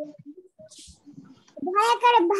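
A mostly quiet stretch with a brief hiss, then near the end a voice starts a drawn-out syllable that rises in pitch.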